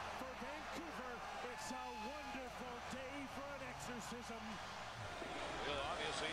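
A hockey TV commentator talking, low in level, over steady background noise.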